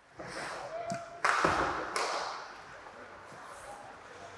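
Ice hockey arena sounds: a sharp, loud bang about a second in, followed by a fading rush of crowd noise, with a few lighter taps and a steady background hum of the rink.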